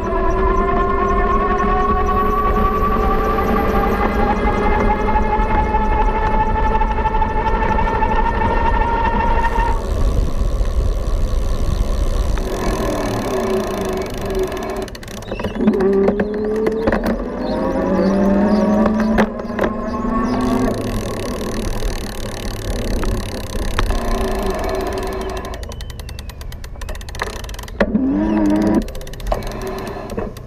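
Electric bike's geared rear hub motor whining under pedal assist, its pitch rising steadily for about ten seconds as the bike gathers speed, then rising and falling again in several shorter stretches. Under it runs a constant rush of wind and tyre noise.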